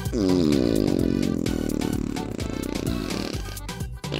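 A long cartoon fart sound effect: a buzzing tone that starts high, falls in pitch over about a second, then holds lower and fades out after about three and a half seconds, over background music.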